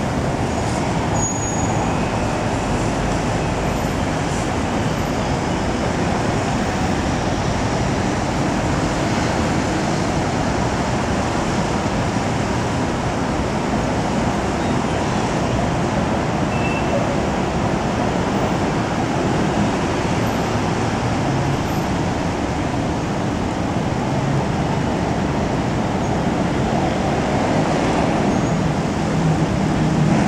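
Steady city street traffic noise: a constant hum of road vehicles, growing a little louder near the end.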